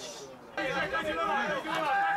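Several men's voices shouting and talking over one another outdoors on a football pitch, breaking out about half a second in after a near miss at goal.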